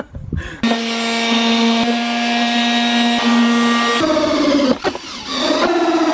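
Cordless drill spinning a hole saw through the plastic front body panel of an ATV, enlarging the snorkel holes: a steady motor whine under load with the rasp of the teeth cutting plastic. It stops briefly about five seconds in, then cuts again.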